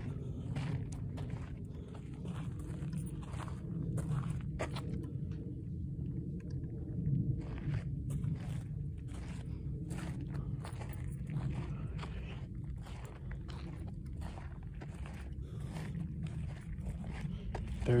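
Footsteps crunching on a dry dirt trail at a slow walk, irregular short steps throughout, over a steady low rumble.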